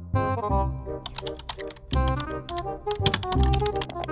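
Rapid computer keyboard typing in two quick runs, about a second in and again near the end, over background music with a steady bass line and a bright keyboard melody.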